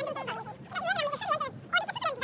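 Women's voices chattering, with quick rises and falls in pitch.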